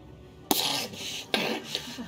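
A man's voice imitating a waterlogged weasel coughing and sneezing: two short, sharp coughs about a second apart.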